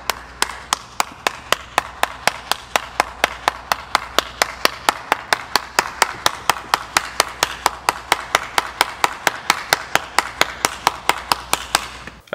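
One person clapping hands in a slow, steady rhythm, about four to five claps a second, over a steady low hum.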